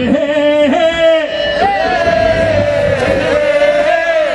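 A man singing into a microphone in long held notes, the pitch bending at the ends of the phrases.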